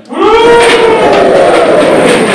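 A group of children's voices bursting out loudly all at once about a quarter of a second in, laughing and calling out together, then holding loud.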